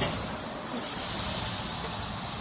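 Steaks sizzling on a charcoal grill grate over white-hot coals, a steady hiss.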